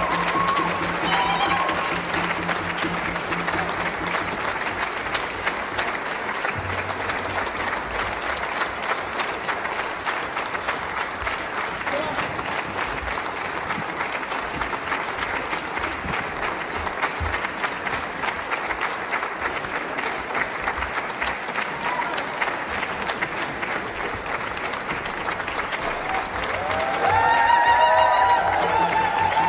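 Audience applauding steadily, the clapping holding an even level throughout.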